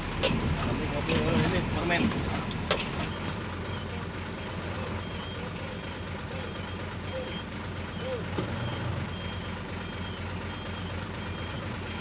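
Truck diesel engine running at low speed, heard from inside the cab, with a reversing alarm beeping repeatedly from about four seconds in. A man's voice is heard briefly at the start.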